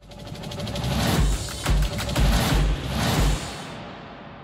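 Short news-show ident music: a fast, even ticking beat with about five heavy bass hits, fading out near the end.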